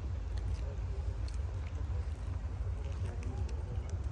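Wind rumbling steadily on a handheld phone microphone, with faint voices of people in the distance and a few light ticks.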